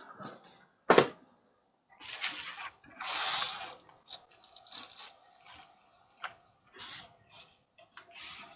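Sealed baseball card packs being handled and squared into stacks: the wrappers rustle and crinkle, loudest about two and three seconds in, with a sharp tap about a second in and short clicks and taps between.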